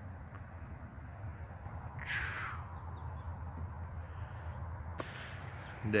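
A bird gives one short, harsh call that falls in pitch about two seconds in, over a steady low background rumble.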